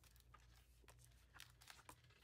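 Near silence with a low room hum and a few faint paper rustles and small clicks as the pages of a sticker book are handled and turned.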